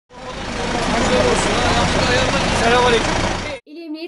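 Street noise: a steady hum of traffic with people talking in the background, cutting off abruptly near the end, when a woman's narrating voice begins.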